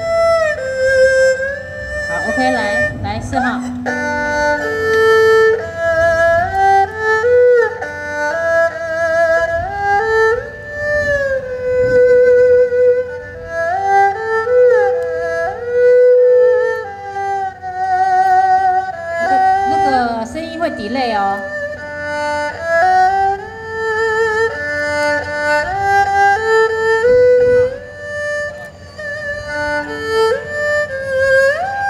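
Amplified erhu playing a solo melody through the stage PA, with wavering vibrato and sliding notes. It is one player's turn in a sound check.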